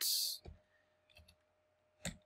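A few sparse, faint computer keyboard keystrokes as code is typed, after a short hiss at the very start.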